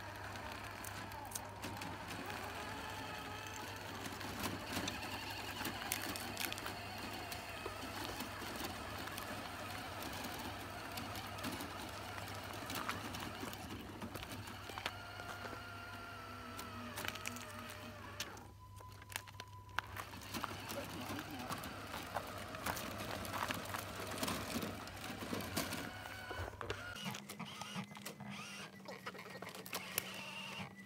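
Indistinct voices talking in the background, over the whir of the small electric motors and gearboxes of radio-controlled scale semi trucks pulling heavy trailers.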